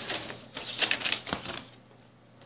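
Rustling and clicking of a vinyl LP and its cardboard sleeve being handled, loudest about a second in, with a sharp click a little after that.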